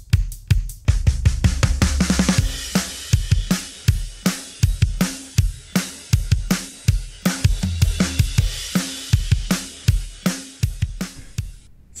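Isolated drum-kit stem separated from a full song by Logic Pro 11's Stem Splitter, playing a steady beat of kick, snare and cymbal hits with a quick run of hits about two seconds in. The separation is clean, with a little bit of noise left in the drums.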